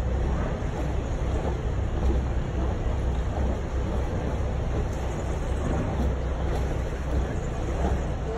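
Sailboat's engine running slowly with a steady low rumble, mixed with wind buffeting the microphone.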